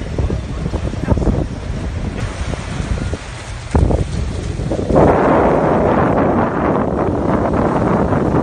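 Wind buffeting a phone microphone on a beach, mixed with surf washing in. The rush grows louder and fuller about five seconds in.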